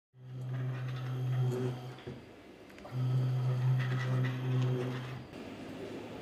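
Small electric motor of a prototype automated bag-valve-mask ventilator humming steadily in two runs of about two seconds each, with a short pause between.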